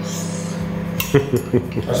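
A metal spoon clinking against a glass bowl as a chimpanzee eats porridge from it, with one sharp clink about a second in, over a steady low hum.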